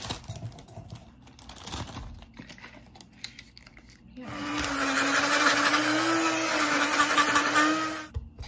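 Plastic fruit bag crinkling and rustling as it is handled, then about four seconds in an electric blender starts and runs steadily, blending a smoothie, its motor pitch wavering slightly, and cuts off at the end.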